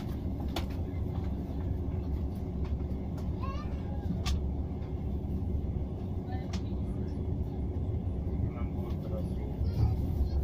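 Steady low rumble of a moving passenger train heard from inside the carriage, with a few sharp clicks.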